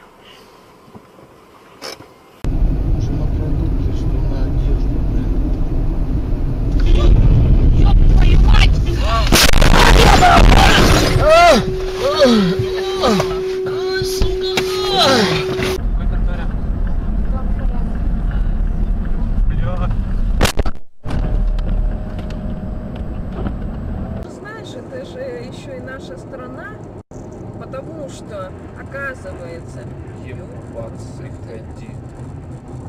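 Dashcam recordings of cars driving: loud cabin and road rumble, with excited voices and a steady held tone in the middle. The sound changes abruptly several times as the clips cut.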